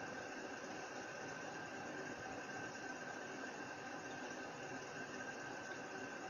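Steady hiss of background noise, the microphone's noise floor and room tone, with a faint steady high-pitched tone running through it.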